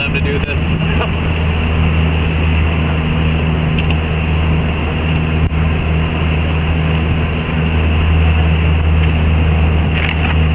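Motorboat engine running steadily with a low hum, under a constant rush of wind and water spray.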